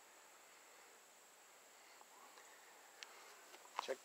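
Near silence: a faint steady high-pitched tone over a low hiss, with a couple of small clicks near the end.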